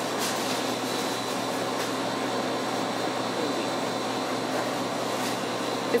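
Steady whooshing hiss of ventilation or air-conditioning fans, with a low steady hum and a faint thin whine.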